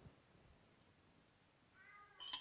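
Near silence: room tone, with a brief, faint, high-pitched squeak near the end.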